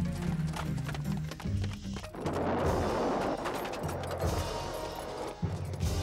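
A cartoon explosion: a wooden bridge blowing apart about two seconds in, a noisy blast that dies away over two or three seconds, over dramatic background music.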